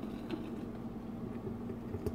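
Thick oat atmet poured in a slow stream from a pot into a ceramic pitcher, a soft faint pour over a steady low hum.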